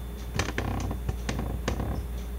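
Canon BG-E9 plastic battery grip being handled, giving a run of small irregular clicks and creaks starting about half a second in.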